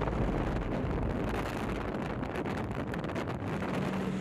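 Snowmobile engine running as it tows a loaded rescue sled over snow, with heavy wind buffeting the microphone.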